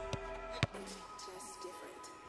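Background music with a few steady notes, and a single sharp knock of a football being struck about two-thirds of a second in.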